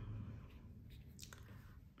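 Faint low rumble of distant thunder, strongest in the first half second and then easing off, with a few light brush taps on paper.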